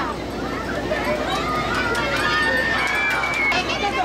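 Several raised voices calling out over steady crowd chatter, as spectators and officials shout around a sumo bout in progress.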